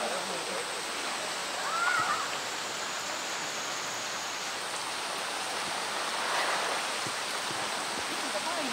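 Steady hiss of heavy rain falling on the surface of a pool, mixed with the rush of water running into it.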